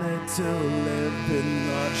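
Live band playing, a horn section of trumpet, trombone and saxophone holding and bending notes over electric guitar.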